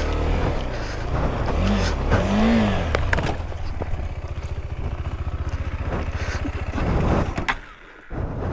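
Single-cylinder engine of a KTM 390 Adventure motorcycle working up a rocky climb, revving up and back down about two seconds in, then chugging at low revs with a few knocks and scrapes as the bike goes over onto the rocks. The engine stops near the end, stalled as the bike drops.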